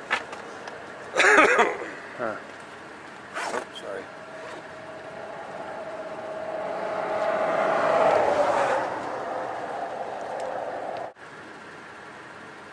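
A few knocks and a short burst of noise near the start. Then a motor vehicle runs with a steady hum that swells for about four seconds and eases, and it cuts off abruptly near the end.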